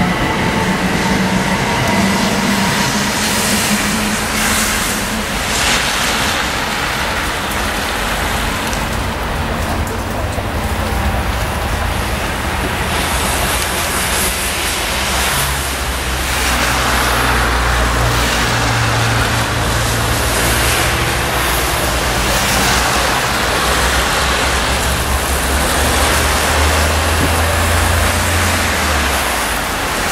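Road traffic: cars passing on a wet road, a steady rush of tyre noise. A faint rising whine comes near the start, and a low engine hum runs through the second half.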